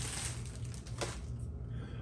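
Faint rustling of a plastic bag wrapped around a statue piece as it is lifted and handled, fading after about a second, with a short click about a second in. A steady low hum runs underneath.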